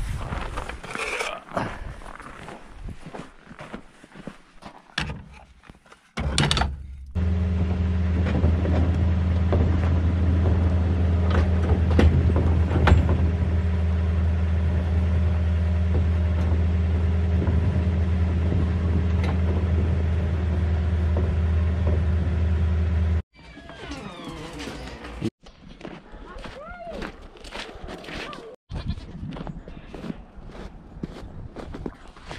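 Scattered knocks and clatter, then a loud, steady low drone for about sixteen seconds that cuts off suddenly. Near the end, goats bleat several times.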